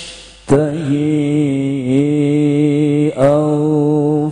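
A man reciting the Qur'an in melodic tilawah style through a microphone. After a short breath he draws out one long, ornamented phrase with wavering pitch, and a new rising phrase begins about three seconds in.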